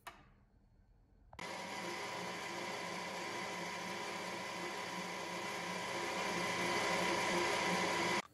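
Bernardo Profi 600G metal lathe running and turning a pen blank held in an ER32 collet chuck, the tool cutting the spinning rod: a steady whine over a cutting hiss. It starts suddenly about a second in and grows a little louder near the end.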